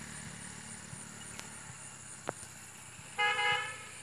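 A vehicle horn toots once, briefly, about three seconds in, as a steady flat tone over a continuous outdoor background. Two faint sharp clicks come before it.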